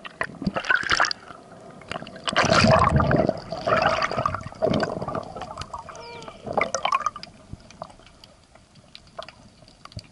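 Underwater water noise picked up by a camera underwater: gurgling and bubbling in irregular bursts, loudest a couple of seconds in, dying down toward the end.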